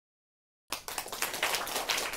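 Silence, then audience applause cuts in abruptly about two-thirds of a second in: a dense patter of many hands clapping.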